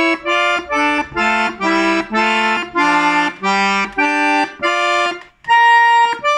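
Titano piano accordion playing a run of short, detached chords, about two a second, then a brief break and a longer held chord near the end.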